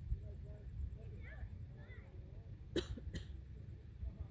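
Two short, sharp cough-like bursts about half a second apart, after faint chirping calls, over a low background rumble.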